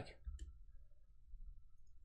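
A faint click from the computer keyboard or mouse about half a second in, over quiet room tone with a faint steady hum.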